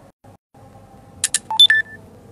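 Two quick clicks, then a short electronic chime of three beeps stepping low, high, then a slightly longer middle note, typical of a phone notification tone.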